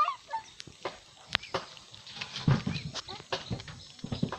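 A white-faced capuchin monkey eating rice from its hands: scattered small clicks and rustles of handling and chewing, with a denser patch of low rustling a little past halfway.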